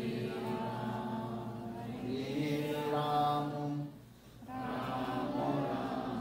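Devotional chanting: voices chanting prayers in long held phrases, with a short break about four seconds in.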